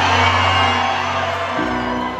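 Live band music with the audience cheering and whooping over it; a new chord with a deeper bass comes in about one and a half seconds in.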